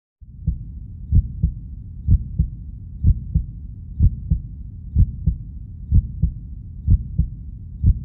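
Heartbeat sound effect: paired low thumps, lub-dub, about once a second, over a steady low rumble.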